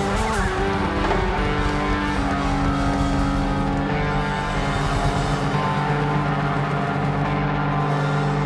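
Rock band playing live: electric guitars over keyboards, drums and percussion, with long held notes.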